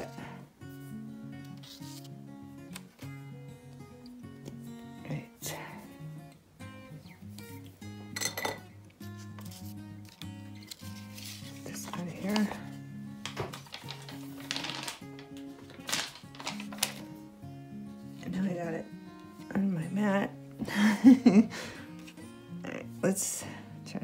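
Light instrumental background music, with occasional brief rustles and taps of paper and a chalk marker being handled on a table.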